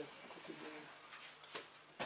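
Quiet room tone with a faint, low cooing bird call about half a second in.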